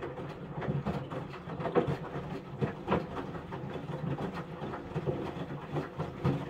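Samsung WW75TA046TE front-loading washing machine drum turning during a quick wash, wet laundry tumbling and thudding irregularly over a steady motor hum. The drum is speeding up, the clothes starting to cling to it.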